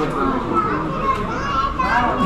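Background chatter of several high-pitched voices talking over one another, with no single voice in front.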